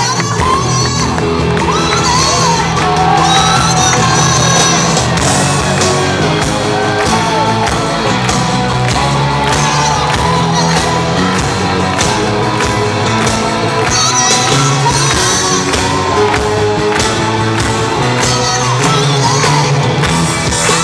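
Rock band playing live in a large hall: drum kit, bass and keyboards with a singing voice over them, and the audience shouting and whooping along.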